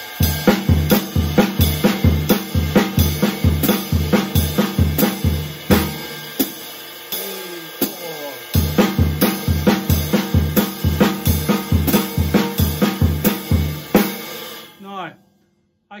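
Jazz drum kit playing a basic swing exercise: a straight ride-cymbal pattern with the hi-hat on two and four, while crotchet triplets alternate between bass drum and snare, the bass drum starting the figure. The low kick thuds drop out for about two seconds midway, and the playing stops about two seconds before the end.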